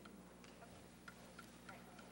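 Near silence: room tone with a low steady hum and a few faint, brief ticks.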